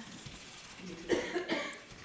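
A person coughing, a short cluster of about three quick coughs about a second in, over quiet room tone.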